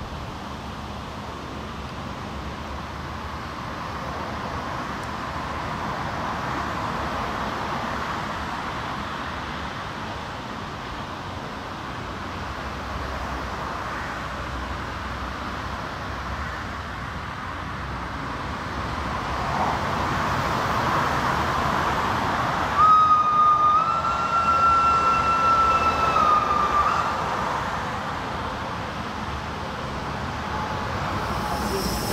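SLM H 2/3 rack steam locomotive working uphill with a steady rush of exhaust and running noise that grows louder about two-thirds of the way through. Its whistle then sounds one steady high note for about four seconds, stepping up slightly in pitch just after it starts.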